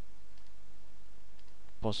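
Faint click of a computer mouse over a steady low electrical hum. A man starts speaking near the end.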